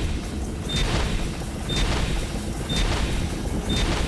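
Countdown sound effect for a TV show intro: a short high beep with a sharp hit about once a second, four times, over a deep, heavy low-end bed.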